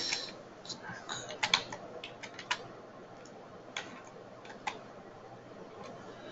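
Computer keyboard keystrokes: short irregular runs of clicks in the first few seconds, then a few scattered single keystrokes.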